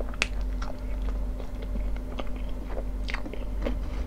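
Close-miked chewing of a mouthful of soft hot dog bun with ketchup: irregular wet mouth clicks and smacks, with two sharper clicks, one near the start and one about three seconds in.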